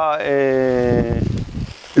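A sheep bleating once: one long call of about a second that drops in pitch at the start and then holds level.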